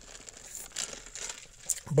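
Faint rustling close to the microphone in a pause of a man's talk, with a small click just before his voice comes back in at the very end.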